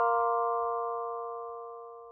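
Music: the final held chord of a short logo jingle, several steady tones left ringing after the last struck notes and fading away evenly.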